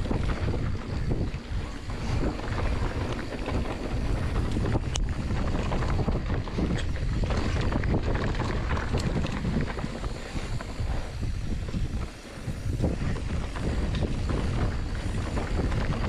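Wind rushing over the microphone of a mountain bike riding fast down dirt singletrack, over the tyres rolling on leaf-covered dirt and the rattle of the bike. A sharp click about five seconds in, and a brief drop in the noise about twelve seconds in.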